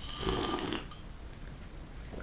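A person slurping a drink from a mug, one loud slurp of a little under a second near the start.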